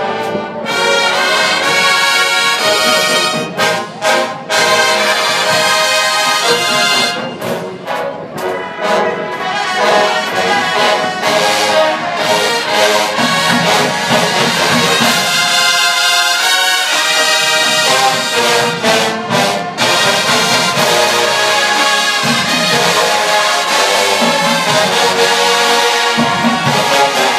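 A large marching band playing a loud, brass-heavy tune in full ensemble chords, with a few brief cut-offs between phrases.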